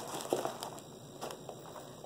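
Faint handling noise: a few light clicks and crinkles as bubble-wrapped eggs are set into a cardboard shipping box.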